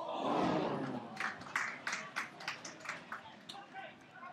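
Pitchside sound from a small football crowd and players: a swell of voices in the first second, then scattered sharp claps and shouts.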